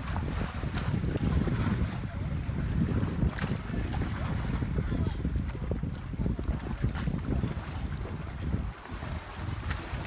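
Wind buffeting the microphone in a steady low rumble, over the wash of sea water.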